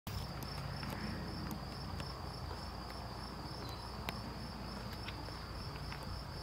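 A steady, high-pitched insect trill, cricket-like, running without a break, over a low rumble.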